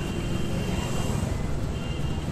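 Street traffic from passing scooters and e-rickshaws: a steady low rumble with no distinct events.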